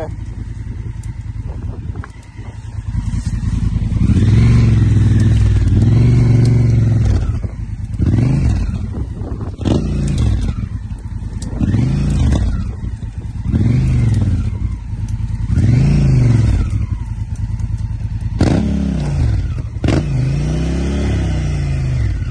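Honda Africa Twin's parallel-twin engine idling, then revved in about nine short bursts roughly every two seconds while the bike is worked through dense scrub.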